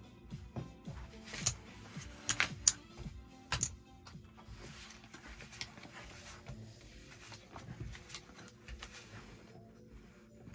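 Casino chips clicking together as a losing bet is scooped off the felt, then playing cards being slid and dealt on the table, over quiet background music. The sharpest clicks come in a cluster about one and a half to three and a half seconds in, with softer card sounds after.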